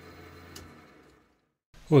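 Faint steady hum of a metal lathe running, with one small click, fading away about a second in to a brief dead silence.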